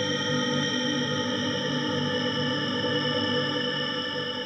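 Ambient synthesizer music: a dense chord of many held tones over a low pulsing figure.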